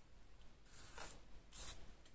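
Faint rustle of a paper craft piece being handled and slid on a craft mat, in two brief bursts less than a second apart.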